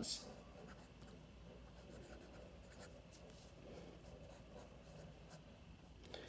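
Pen writing on a lined paper pad, heard as faint short strokes that come and go.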